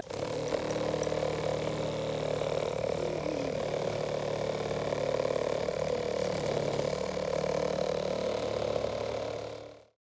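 Drawing robot made from a small 1.5-volt DC motor weighted off-centre with a lump of modeling clay and taped to a plastic yogurt cup, running steadily: a buzzing rattle as the cup shakes on its marker-pen legs. It fades out at the end.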